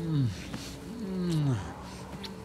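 Deep, drawn-out vocal groans that fall in pitch, two of them, each about half a second long.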